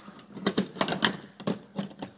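Rapid, irregular clicks and knocks of the plastic and metal camera housing being handled and hooked onto its wall back box.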